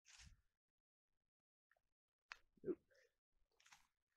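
Near silence, with a brief rustle right at the start and a faint hiss near the end.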